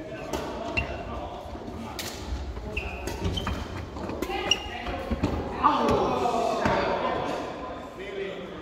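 Doubles badminton rally in a large echoing sports hall: sharp cracks of rackets striking the shuttlecock, footfalls and short shoe squeaks on the wooden court floor, and voices calling out, loudest in the second half.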